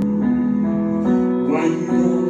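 Slow instrumental backing music with a plucked guitar over held chords; the notes change a few times.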